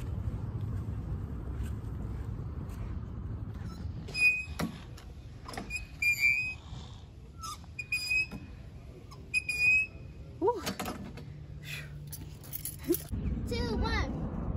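Outdoor park fitness machine squeaking as its handles are pushed out and let back, a short high squeak about every second or so, often in pairs. Before the squeaks there is a low rumble.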